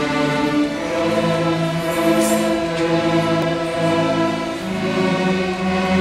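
Children's string orchestra of violins playing long bowed notes together, the pitch moving to a new note every second or so.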